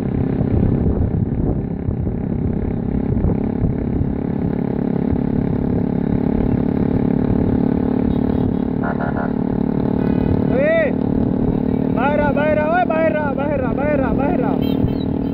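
Small motorcycle engine running steadily at cruising speed close to the microphone, with wind rush. A man shouts briefly about ten seconds in and again in a quick string of calls near the end.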